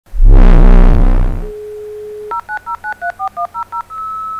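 A loud, deep pitched hit opens, followed by a telephone dial tone and then a phone number keyed in as a quick run of about eleven touch-tone (DTMF) beeps.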